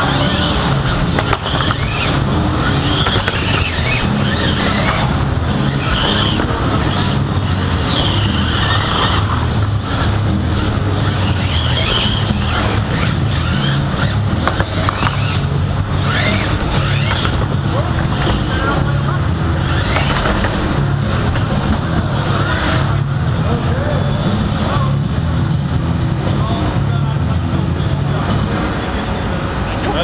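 Combat-robot fight heard from a small robot in the arena: a steady electric-motor drone close to the microphone, with crowd shouting and scattered knocks of robots hitting each other.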